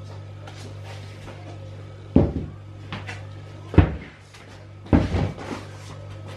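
Three sharp knocks about a second or a second and a half apart, with a few fainter clicks, over a steady low hum in a kitchen.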